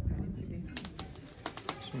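Sharp, irregular crackles and pops from a wood cooking fire with a pan of food frying on it, starting about a second in.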